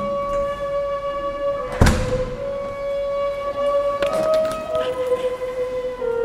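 Bamboo flute playing a slow melody of long held notes. A single loud thump cuts through about two seconds in.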